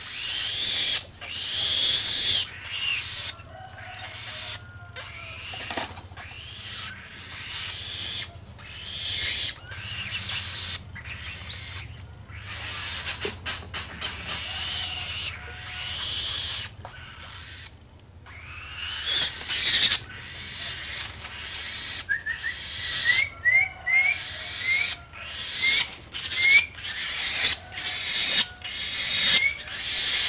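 A bird of prey giving hoarse, rasping calls, repeated every second or two as it is fed, with handling clicks between them. Near the end a few short rising chirps are heard.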